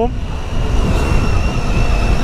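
Wind rushing over the microphone of a Triumph Tiger 800 motorcycle at riding speed, mixed with engine and road noise, with a faint steady high tone underneath.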